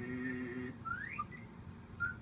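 Cartoon character voice from a television holding one steady hummed note, then a short rising whistle-like slide sound effect about a second in, heard through the TV's speaker in a small room.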